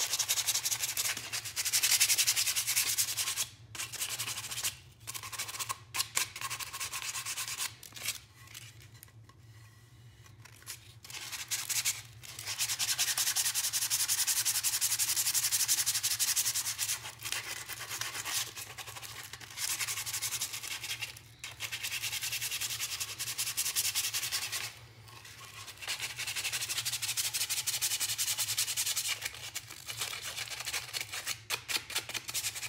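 Hand sanding a pine board with a folded sheet of aluminum oxide sandpaper, in quick back-and-forth scratchy strokes. The sanding stops for a few seconds about eight seconds in, then again briefly near the end.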